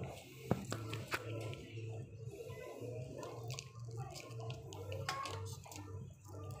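Indoor shop ambience: background music and faint voices run throughout under a steady hum. A few sharp clicks cut in, the loudest about half a second in.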